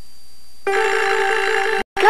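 Steady tape hiss with a thin high whine. About a third of the way in, a bell starts a rapid, continuous alarm-clock ring, then cuts off abruptly just before the end.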